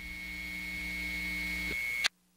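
A steady hiss with a faint high whine and a low hum, slowly growing louder and then cutting off suddenly at the end.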